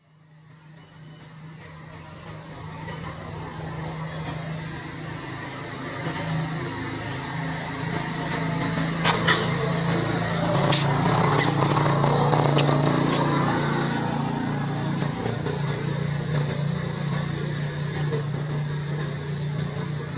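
Steady low hum of a motor vehicle engine running, fading in over the first few seconds and then holding, with a few sharp clicks and a brief high squeak around the middle.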